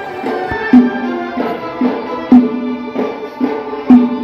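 Live Uyghur folk dance music from a small ensemble: a string melody over a frame drum, with a heavy low drum stroke about every one and a half seconds and lighter beats between.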